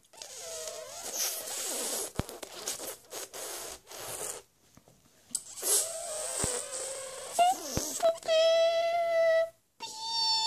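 A person making breathy, wavering high-pitched vocal noises in two stretches with a short pause between, then holding one steady high hum-like note for about a second and a half near the end.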